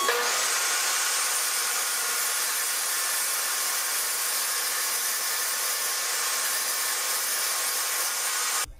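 DeWALT jobsite table saw switched on, its whine rising as the blade spins up, then running steadily while it rips the rough edge off a bowed board clamped to an edge-jointing sled.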